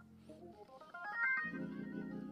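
Hammond B3 organ playing softly: a held chord, then a quick run of notes climbing upward about halfway through, and a fuller, louder chord held from near the end.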